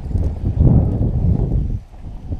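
Wind buffeting the camera's microphone: a low, rough rumble that drops away briefly near the end.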